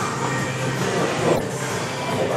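Steady rumbling gym noise with one sharp slap of a boxing glove landing on a trainer's punch mitt about a second and a half in.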